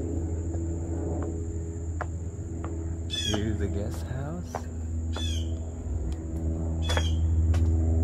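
A bird calling with short falling chirps about every two seconds, over a steady high insect drone and a steady low hum.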